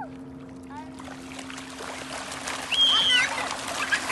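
Fish thrashing and splashing in shallow water at the shoreline, the splashing building from about a second in, over a steady low hum. A loud high-pitched cry rises over it near three seconds in.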